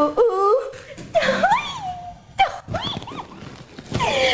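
A woman's voice crooning wordless 'u u u' sounds in several swooping rises and falls of pitch, a swooning, lovestruck moan.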